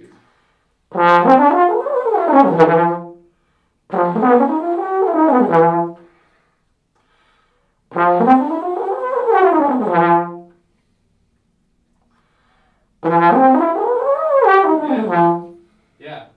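Trombone playing four upward rips, each one climbing quickly from the same low note into the upper range and sliding back down to it, with short pauses between. It is a range-building exercise to get the lips vibrating in a high register where the player's range otherwise cuts off.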